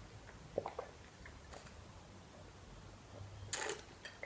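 Quiet sipping of a soft drink through a straw, with a few faint clicks about a second in and a short airy slurp near the end.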